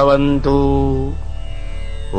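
A man's voice chanting a closing Sanskrit prayer in long held notes, the last note ending about a second in, over a steady low drone.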